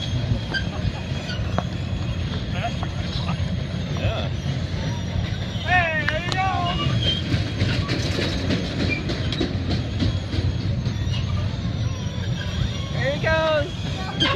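A kiddie carnival ride spinning, a steady low rumble with some clatter in the middle. A child gives short high wavering squeals about six seconds in and again near the end.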